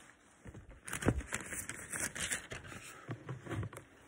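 Thin Bible pages rustling and crinkling as they are turned, with small clicks and a soft knock about a second in.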